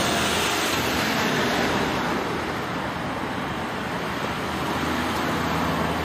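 City road traffic: passing cars make a steady wash of tyre and engine noise, easing slightly midway and swelling again near the end as another vehicle approaches.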